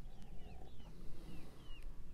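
Small birds chirping in the background, short arched high notes repeating a few times a second, over a low steady rumble.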